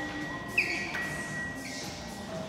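Kone elevator's electronic signal: a steady high tone, with a sharp ding about half a second in and a fainter one near the end.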